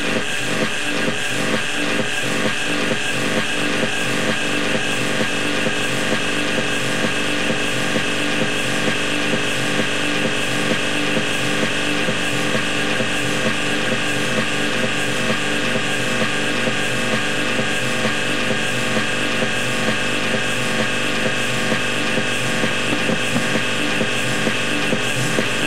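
Techno DJ mix: electronic dance music with a steady beat and sustained synth tones.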